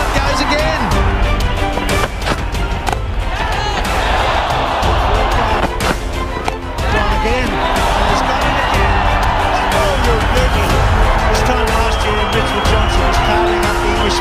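Dramatic cinematic background music laid over the steady noise of a stadium crowd from the match broadcast.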